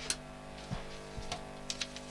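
Faint, steady low hum with a few scattered light clicks.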